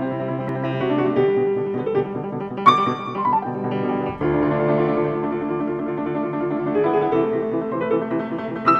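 Solo concert grand piano playing classical music in slow sustained chords. About three seconds in, a bright high note rings out and steps down in a short falling line, and a new full chord is struck about a second later.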